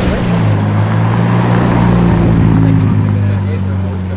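Ferrari's engine running at low, steady revs as the car rolls slowly forward, a steady low drone, with people talking behind it.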